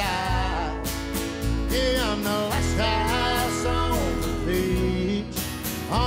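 Live acoustic country band playing: acoustic guitars strummed over a steady bass, with a melody line that slides between notes on top.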